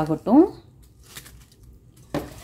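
A person speaking briefly at the start, then low, steady background noise with a couple of faint soft ticks.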